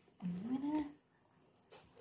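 A small dog makes one short vocal sound that rises in pitch, about half a second long, near the start while it is held and its collar is fastened. Faint clicks follow.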